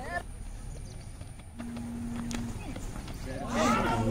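Players' voices calling across an outdoor cricket ground, faint at first and growing louder near the end, over low background noise, with a short steady hum midway.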